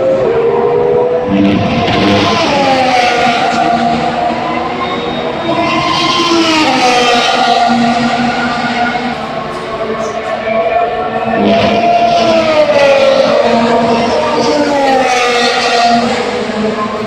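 Formula 1 cars' turbocharged V6 engines running on the circuit, several engine notes rising and falling in pitch as they rev and pass, with rushing swells about a second and a half, six and twelve seconds in.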